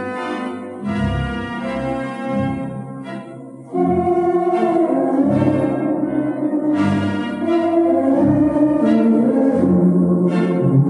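Barton theatre pipe organ playing sustained chords over bass notes. A little under four seconds in it swells suddenly louder, with fuller chords.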